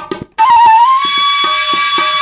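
Bamboo transverse flute (bansuri) playing a melody: a brief break for breath near the start, then one long held note that bends up slightly and holds steady.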